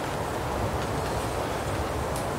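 A steady low rumbling noise with a few faint ticks and no clear event.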